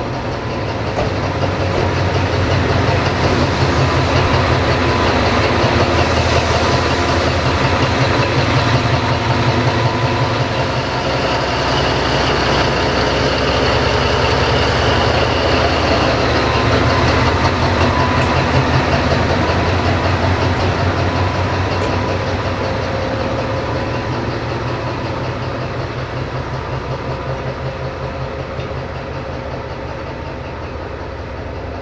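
Diesel engine of an LDH1500 diesel-hydraulic shunting locomotive running at low revs as the locomotive moves close by. It grows louder over the first few seconds, stays loudest through the middle with a higher whine added, then slowly fades as the locomotive draws away.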